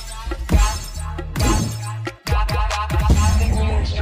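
Background music with a heavy bass beat and sharp crash-like hits, cutting out briefly just after two seconds in before the beat comes back.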